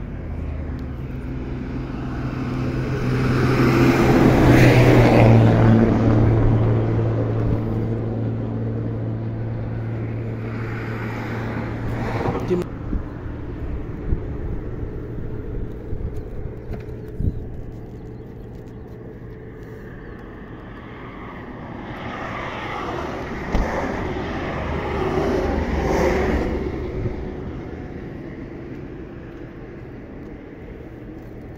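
Motorway traffic passing: vehicles swell and fade twice, loudest about five seconds in and again near the end, with a steady low engine hum under the first pass.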